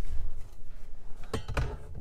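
Handling noise as a handheld phone camera is swung around inside a car's back seat, with a couple of short knocks about one and a half seconds in.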